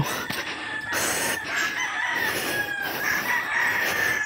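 A rooster crowing: one long, drawn-out call that starts about a second in and lasts about three seconds.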